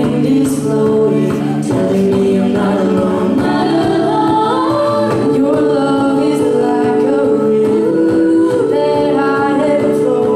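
A mixed-voice a cappella group singing into handheld microphones, several voice parts holding layered chords that shift together.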